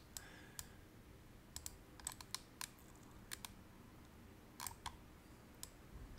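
Faint, scattered clicks of someone working a computer, about a dozen short ones, several in quick pairs, over near silence.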